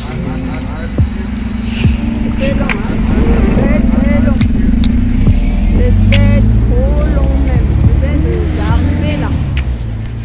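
Background music with a singing voice, over a loud low rumble that swells through the middle of the stretch and eases near the end.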